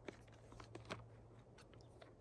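Near silence with a few faint clicks and light rustles of a small battery pack and its cable being handled and taken out of its packaging.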